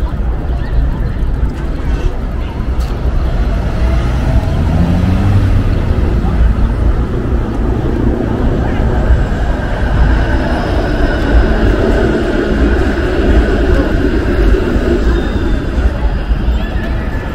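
Busy downtown street ambience: passing car traffic and the voices of passers-by over a steady low rumble, a little louder from about four seconds in.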